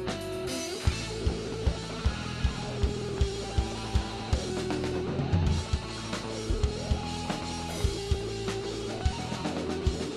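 Live rock band playing without vocals: distorted electric guitar with a drum kit. A steady kick-drum beat comes in about a second in, a little over two beats a second.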